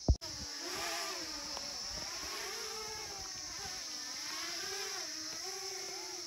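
A vehicle engine running, its pitch wavering up and down and then holding steadier near the end. It is preceded by a sharp click right at the start.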